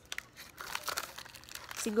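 A packet of hard wax beans crinkling as it is handled, a run of irregular crackles.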